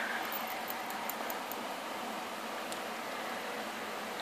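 Steady background hiss, with a few faint ticks in the first second and one more near three seconds in.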